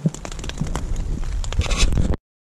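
Rain drops ticking irregularly on a tarp shelter overhead, over a low rumble of camera handling as the camera is picked up and turned.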